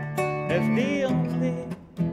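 Acoustic guitar played solo: plucked notes and chords that ring on, with a gliding, wavering melody line over them and a short lull just before the end.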